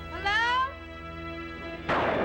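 A short rising animal-like cry, about half a second long, over a sustained eerie music drone; just before the end a sudden loud burst of noise cuts in.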